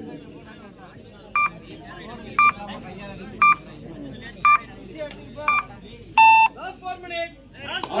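Electronic countdown beeps: five short beeps about a second apart, then one longer, lower beep, over faint crowd voices.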